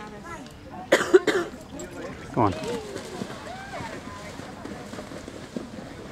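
A person near the microphone coughs sharply about a second in, with faint voices in the background and a short falling vocal sound a little over a second later.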